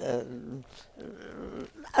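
A speaker's drawn-out, gravelly hesitation sound on a held vowel, trailing off about half a second in. It is followed by a quieter stretch with only faint voice and room sound.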